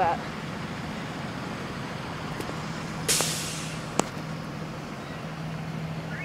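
School buses idling with a steady low hum; about three seconds in, a short hiss of an air brake releasing that fades within half a second, and a sharp click a second later.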